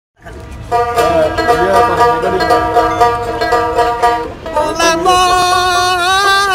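A dotara, the Bengali long-necked plucked lute, played steadily in a baul folk tune, with a man's voice wavering over it. The voice comes in fuller about five seconds in.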